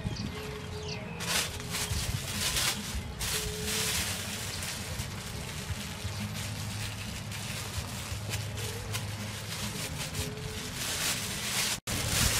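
Plastic bags crinkling and rustling in repeated short bursts as a hand in a plastic-bag glove mixes chopped vegetables in a steel bowl and handles shrimp in a plastic bag, over a steady low outdoor hum.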